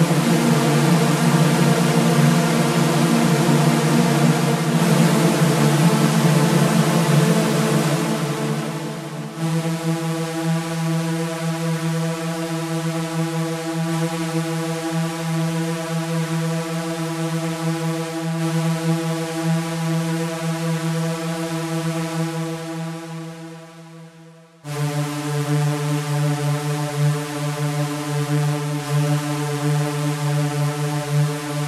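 Electronic soundtrack drone: one low, steady tone rich in overtones. It is hissy for the first nine seconds, then clearer. It fades away a little after twenty seconds and cuts back in suddenly a moment later.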